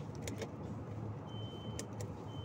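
Steady low hum of a supermarket's chilled display shelf over store background noise, with two light clicks of a plastic salad tub being handled early on. A thin, steady high-pitched electronic tone starts past halfway.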